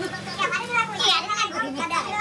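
A person's voice, talking or singing in changing pitch, over a steady low hum.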